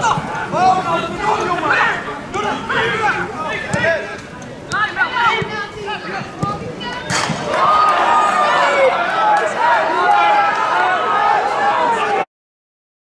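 Several people's voices shouting and calling on a football pitch, louder and more continuous from about seven seconds in.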